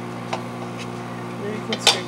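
A microwave oven running with a steady electric hum, with a few light clicks and a sharper click near the end from the phone and spoon being handled.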